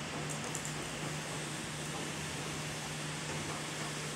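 Steady hiss with a low, even hum, like a fan or ventilation running in a small room.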